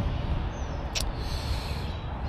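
Steady low outdoor rumble with one sharp click about a second in.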